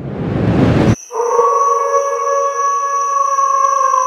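A rising whoosh that cuts off abruptly after about a second, then a long, steady howl in several tones at once that sags slightly in pitch near the end: wolves howling.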